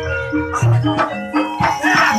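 Javanese gamelan playing live: a run of struck pitched notes, with low drum or gong tones beneath and sharp percussion strikes.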